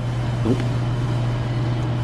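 A steady low mechanical hum over general room noise, with a child's short "nope" about half a second in.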